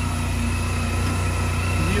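Honda Silver Wing 400 maxiscooter's parallel-twin engine idling steadily with a low, even hum.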